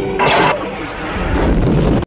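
Sci-fi film sound effects of the Death Star superlaser firing: a short noisy blast about a quarter second in, then a deep rumble swelling toward the end as the explosion builds.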